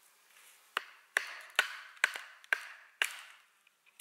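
A wooden baton striking the spine of a knife to split a short stick, six sharp knocks about half a second apart.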